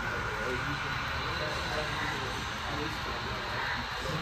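HO scale freight train running on the layout, a steady whirring rolling noise from the cars on the track, with indistinct voices in the room.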